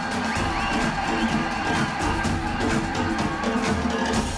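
Live pop band music playing an instrumental passage with a steady drum beat.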